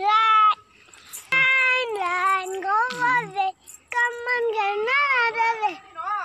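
A little girl singing in a high voice, in three drawn-out phrases with long, wavering held notes.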